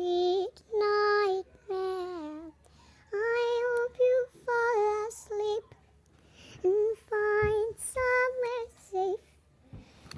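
A high voice singing a slow melody in long held notes, with short breaks between the phrases.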